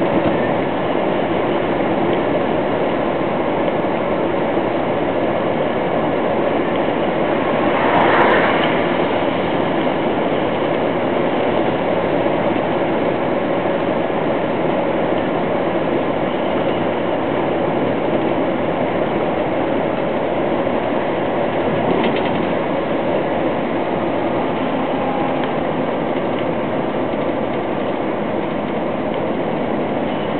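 Steady running noise inside a moving truck's cab: engine and tyres on the road at speed. It swells briefly about eight seconds in.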